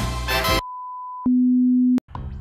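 Intro music ends about half a second in, followed by a television-style test tone of the kind played with colour bars: a steady high beep, then a louder, lower steady tone that cuts off suddenly at the end.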